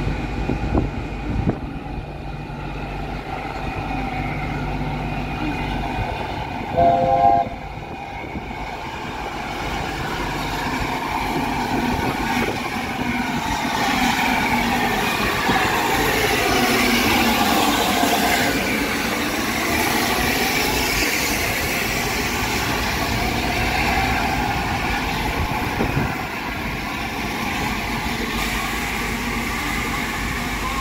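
LNER A4 steam locomotive 60007 Sir Nigel Gresley running slowly into the platform with its coaches. A short whistle blast sounds about seven seconds in. After that comes a long, swelling rush of steam and rolling wheels as the engine and train pass, loudest around the middle.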